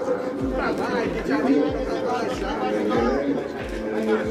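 People chattering over background music with a steady bass beat, about three beats every two seconds.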